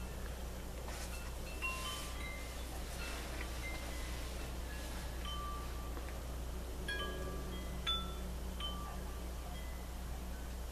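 Wind chimes ringing lightly and irregularly, single notes at several different pitches sounding here and there, over a steady low hum.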